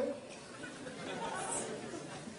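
Faint murmur of audience voices during a pause in a lecture hall.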